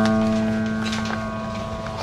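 Grand piano: a low chord struck just before, held and slowly fading away.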